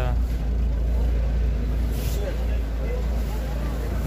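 A steady low rumble with faint voices talking in the background.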